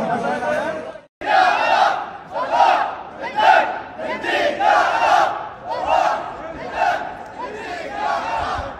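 Stadium crowd chanting together, shouting in a steady rhythm of about one shout a second. The sound drops out for a moment about a second in.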